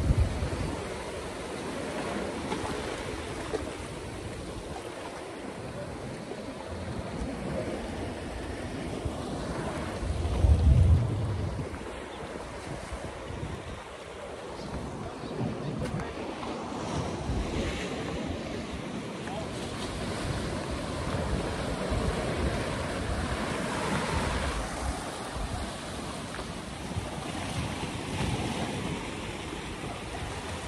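Ocean surf washing over a rock shelf, with wind buffeting the microphone; a louder low rumble about ten seconds in.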